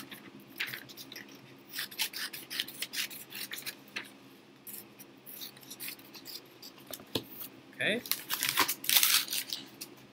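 Scissors cutting through paper: a run of short, irregular snips with paper rustling.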